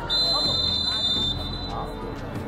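Referee's whistle blown once in a single steady, shrill blast lasting just over a second, stopping play.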